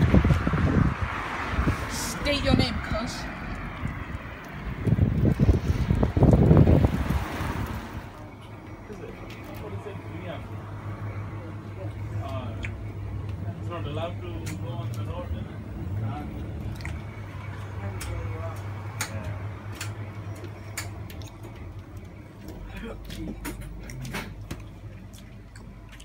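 Indistinct voices with wind buffeting the microphone, then, about eight seconds in, a quieter indoor stretch with a steady low hum and faint voices in the background.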